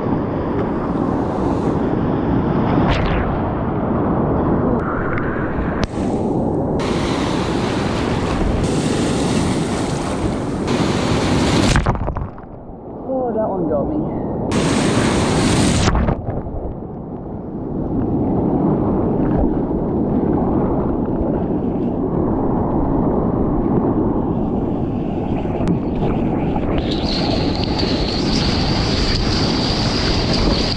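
Wind buffeting the microphone over the rush of surf as a kayak is paddled out through breaking waves. About halfway through, a breaking wave washes over the kayak and camera: the sound briefly goes muffled, then a loud rush of white water, then duller for a moment before the wind and surf return.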